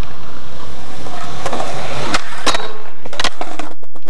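Skateboard wheels rolling on concrete, growing louder. About two seconds in come three sharp clacks as the board hits the handrail and falls to the concrete: a bailed rail trick.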